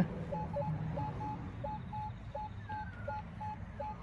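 Minelab metal detector giving short, repeated target beeps as its coil is swept over a buried object. The beeps are mostly one mid-pitched tone, with an occasional lower one, for a target reading in the low twenties.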